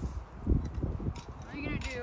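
Indistinct background voices, one brief voice near the end, over an irregular low rumble of wind buffeting the microphone.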